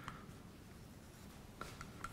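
Faint scratching of a felt-tip marker writing on a whiteboard, a few short strokes.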